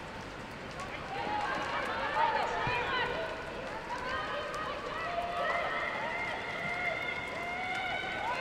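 Women footballers shouting and calling to one another during play, several high voices overlapping and too distant to make out words.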